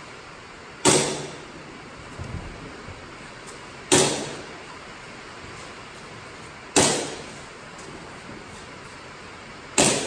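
Four single gunshots, about three seconds apart, each a sharp crack with a short echoing tail.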